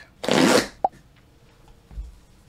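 A short rustling swoosh lasting about half a second, followed by a sharp click and, near the end, a soft low thump.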